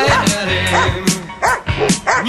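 A Dobermann barking repeatedly at a protection helper who stands still, about five barks in two seconds: the guarding bark of protection-sport work. A rock song with singing plays over the barking.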